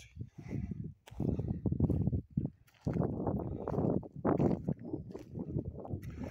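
Footsteps crunching on a dry forest path littered with pine needles, twigs and small stones, in uneven bursts with brief pauses about one and two and a half seconds in.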